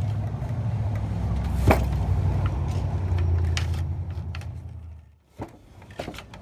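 A low steady hum, like a running motor, that dies away about five seconds in. A sharp knock about two seconds in, with a few lighter clicks later, from the wooden treadle loom being worked.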